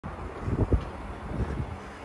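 Merlo telehandler's diesel engine running as it handles a mower on its forks, with wind buffeting the microphone in uneven low gusts.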